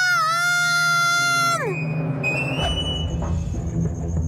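A cartoon boy's long, high wail, held steady for about a second and a half before it drops away. A music cue with drums then comes in for the scene change.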